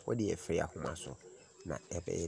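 A man's voice talking: speech only, with no other sound standing out.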